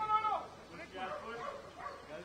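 People's voices calling out across an open field, loudest near the start, where one high call drops sharply in pitch, then fainter talk.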